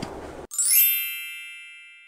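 Edited-in chime sound effect: a bright bell-like ding struck about half a second in, opening with a quick upward shimmer, then ringing and slowly fading over about two seconds while the field sound is cut out.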